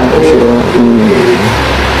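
A voice speaking briefly, over a steady low hum.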